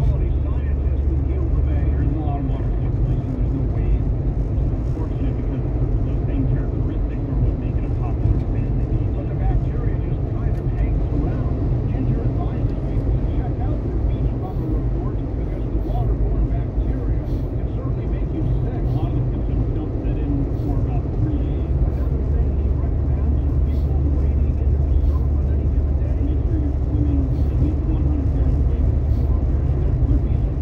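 Steady road and engine rumble heard inside a moving car's cabin, with indistinct talk underneath, likely from the car radio.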